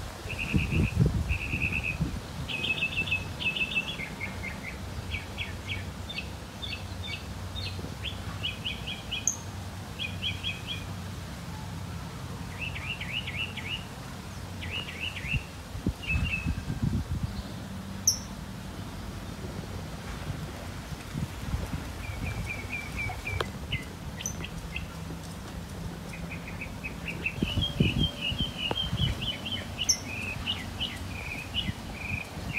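A small songbird singing short phrases of quick chirps, one phrase every second or two with a few pauses between, over a low rumble.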